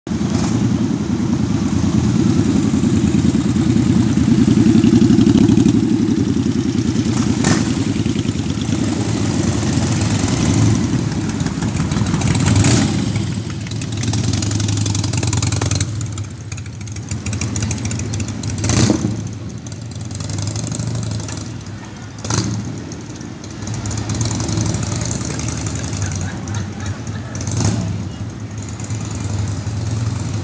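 Motorcycle engines rumbling as the bikes ride past slowly. The rumble is loudest a few seconds in and dies away about halfway through, leaving quieter street noise with a few short knocks.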